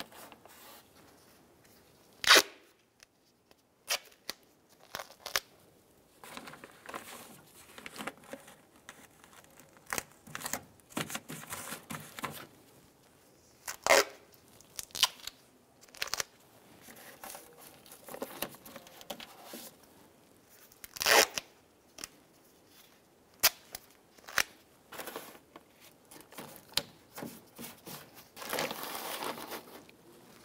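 Duct tape being pulled off the roll and torn, with the plastic door water shield crinkling as it is pressed into place. Many short, sharp rips and clicks at irregular intervals, the loudest about two seconds in, with a longer stretch of noise near the end.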